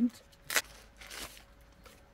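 Thin plastic packaging sleeve being torn open and pulled off a small tripod: a sharp rip about half a second in, then a softer, longer rustle of plastic.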